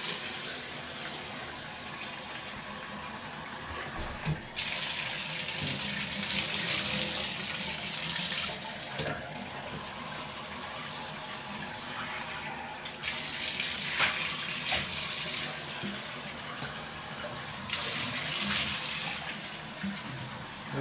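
Water running steadily into a bathtub while a dog is being rinsed, with three louder stretches of several seconds each as water is run over the dog's coat. A few small knocks from the dog shifting in the tub.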